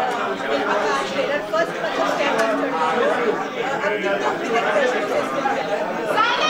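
Several people talking over one another, overlapping chatter of voices in a large room.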